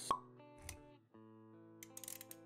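A sharp pop sound effect just after the start, then a softer hit a moment later, over background music of held notes that briefly cuts out before resuming.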